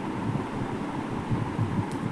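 Low, irregular thumping rumble of microphone handling noise as the recording phone is held and moved.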